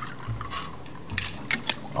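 Cocktail being strained from a cobbler shaker into a coupe glass: a thin stream of liquid trickling into the glass, with a few sharp clicks partway through.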